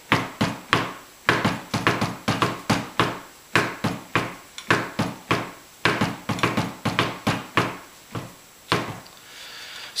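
Pipe band tenor drum struck with felt-headed mallets, playing a rhythmic drum-salute pattern of several strokes a second. The strokes break off abruptly just before the end, where the player has fumbled a measure.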